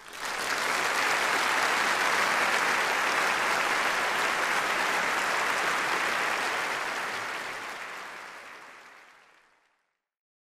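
Audience applauding in a concert hall, starting at once, holding steady, then fading away over the last few seconds.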